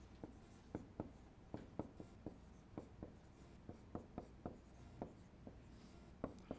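Dry-erase marker writing on a whiteboard: a faint run of short, irregular taps and strokes, about three a second, as a line of terms is written.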